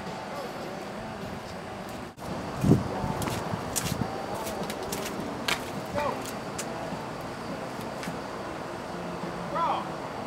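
Indistinct voices of several people talking in the background outdoors, too unclear for words. A single dull thump comes just under three seconds in, with a few light clicks later.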